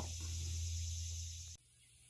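A steady low hum with faint hiss, which cuts off abruptly about one and a half seconds in and leaves near silence.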